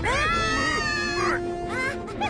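A cartoon character's high-pitched squealing cry, rising at the start and held for about a second and a half before fading, over background music.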